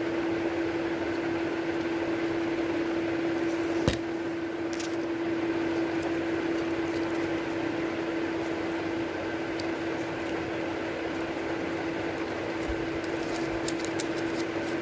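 Steady hum of a running room appliance: one constant low-pitched tone over an even hiss. A single sharp click comes about four seconds in, with a few faint ticks of paper being handled near the end.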